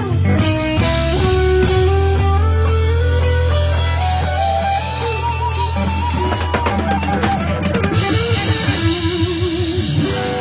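Live funk-soul band playing loud through a PA: a melodic electric guitar lead over a steady bass line and drum kit, ending in a held, wavering note near the end.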